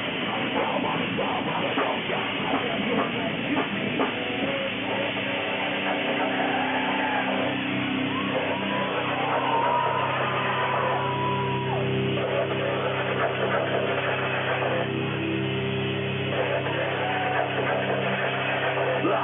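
Heavy metal band playing live, with distorted guitars, bass and drums. It starts in a dense, busy passage, and about four seconds in moves to long, ringing low chords with a higher wavering note over them. The recording sounds dull, with no treble.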